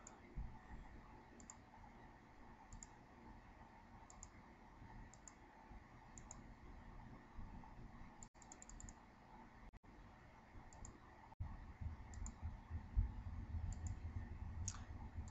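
Faint computer mouse clicks, scattered about one a second, each click placing a node of a traced outline. A low rumbling noise comes in over the last couple of seconds.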